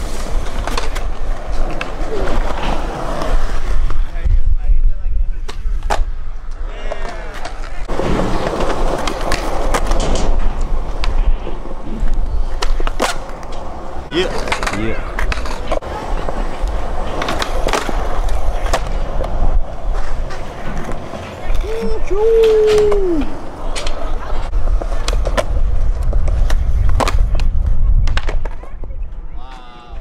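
Skateboard wheels rolling on concrete with a steady low rumble, broken by many sharp clacks of the board's tail popping and the deck landing back on the ground during tricks.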